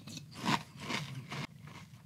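A person chewing a mouthful of Chocolate Frosted Flakes in milk, with uneven crunches, the loudest about half a second in.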